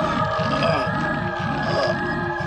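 Horror film score: a low throbbing pulse about four times a second under sustained droning tones.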